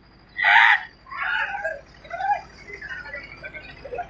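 High-pitched human voices yelling. One loud shout comes about half a second in, followed by several quieter calls and shrieks.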